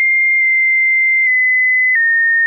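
Metal detector's target tone, a steady high pure tone, giving a strong signal while the XTREM HUNTER coil is close to a large metal object during calibration. The pitch drops slightly twice in the second half.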